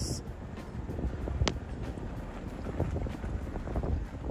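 Wind buffeting the microphone: a steady low rumble, with a single short click about one and a half seconds in.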